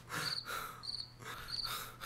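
Crickets chirping, short high chirps repeating about every two-thirds of a second, over a faint low steady hum.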